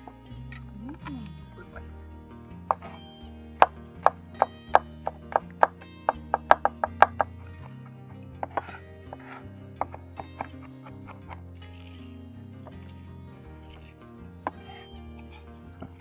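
Chef's knife chopping garlic on a wooden cutting board. A fast run of sharp knife strikes fills the first half, then only a few scattered taps follow, over background music.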